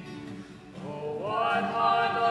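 Live song performance: singing over instrumental accompaniment. After a short dip, the voice slides up into a new held note about a second in.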